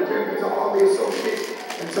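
Indistinct speaking voice with some faint music, from a recorded church service playing in the background.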